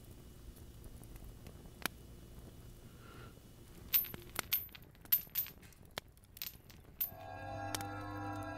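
A run of light metallic clinks and chinks, like a chain necklace being handled and taken off, between about four and seven seconds in. A sustained music chord then swells in near the end.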